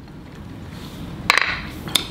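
Snow crab leg shell cracking as it is broken apart by hand: two sharp cracks, one just over a second in and one near the end.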